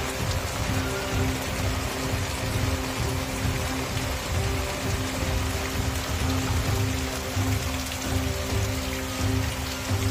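Steady rain-like hiss, heavy and even, with background music of long held low tones laid over it.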